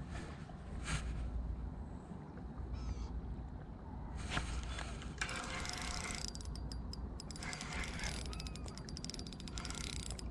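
Spinning reel being worked against a hooked bass, its gears and drag giving a dense, fast run of fine clicks from about five seconds in. Before that there are a few single clicks.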